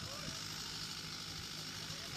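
Steady, faint hiss of outdoor background noise, with a faint voice just at the start.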